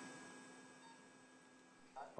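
Near silence: faint room tone with a faint steady high tone.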